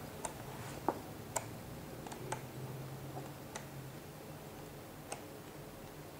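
Faint, irregular clicks and light taps, about half a dozen, from the glossy pages of a large album booklet being handled and turned.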